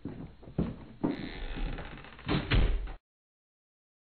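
A few sudden knocks and thumps in a muffled recording, the loudest pair near the end, then it cuts off sharply after about three seconds.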